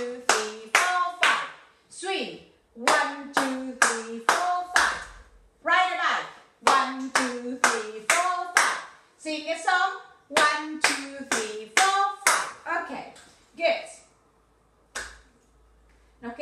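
Hand clapping in repeated rounds of about five quick claps, with a woman's voice counting along to each clap. There is a short lull near the end.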